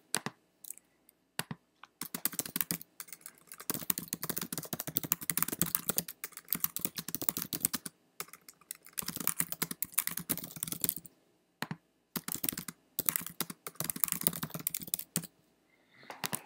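Typing on a computer keyboard: runs of rapid key clicks with short pauses between them, starting about two seconds in and stopping shortly before the end.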